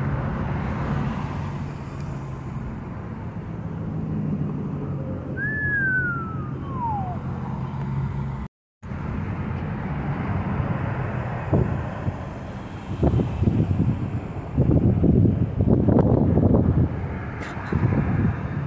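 Car cabin noise while driving in slow freeway traffic: a steady engine and road hum. About six seconds in there is a single falling whistle. In the second half, irregular louder rumbles break in.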